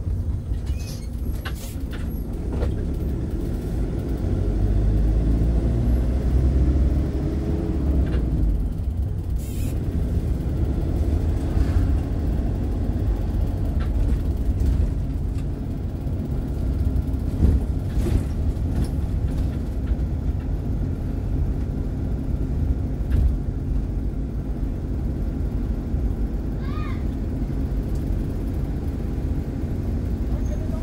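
Motorhome engine and road noise heard from inside the cab while driving, a steady low rumble. The engine note climbs from about four seconds in and drops again at about eight seconds.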